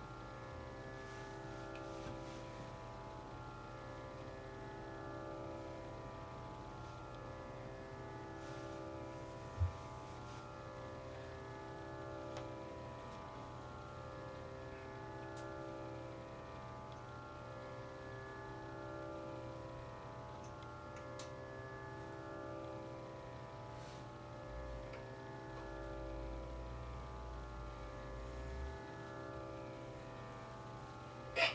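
A harmonium holding a soft sustained chord drone that swells and fades in slow waves every few seconds, with one sharp low thump about ten seconds in.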